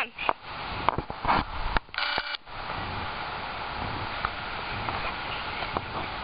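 Handheld camcorder handling noise: a few knocks and clicks, then a short electronic whine about two seconds in, of the kind the camera's zoom motor makes, followed by a steady hiss.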